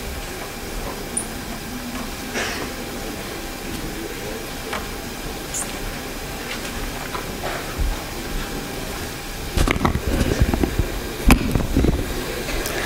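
Steady hiss of a hall's room tone through the public-address system. Near the end come a few low thumps and a sharp knock as the lectern microphone is handled.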